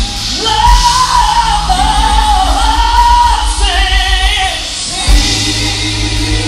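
Live gospel quartet music: a singer carries a long, bending melody line over bass guitar and drums, through the hall's PA system, breaking to a lower phrase a little past halfway.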